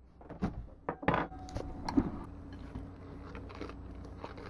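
A few light clicks and knocks, the loudest about a second in, as a ceramic plate and a handheld camera are handled at a desk, then a faint steady hum.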